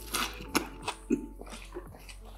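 Close-up chewing of a mouthful of chicken burger: several short, sharp mouth sounds at irregular intervals.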